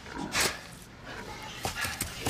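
Pigs grunting: one loud call about half a second in, then shorter ones near the end.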